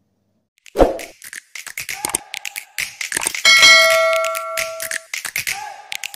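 An outro jingle with a beatbox-style percussive beat. It starts with a thump about a second in. Past the middle, a bright bell-like ding rings for about a second and a half over the beat.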